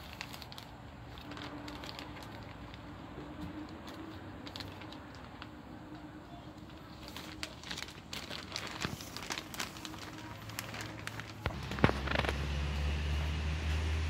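Heavy-duty clear plastic shower curtain crinkling and crackling as it is handled to thread paracord through its grommets, in irregular crackles that grow busier in the second half. A low steady rumble comes in near the end.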